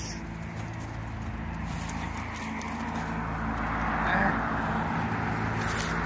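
A chain-link fence rattling and shoes scuffing against it as someone tries to climb it, with a few light clicks near the end. Under it runs a steady low hum, with a swell of noise in the middle.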